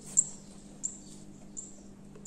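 Pencil tracing around the edge of a metal jar lid on paper: short high scratches about three-quarters of a second apart, the sharpest one just after the start, over a faint steady hum.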